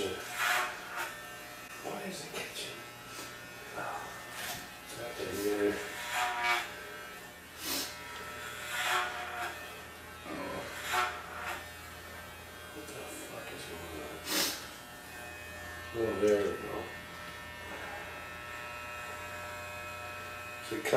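Corded electric hair clippers running with a steady buzz as they are worked through hair. Short murmurs of voice come over the top now and then.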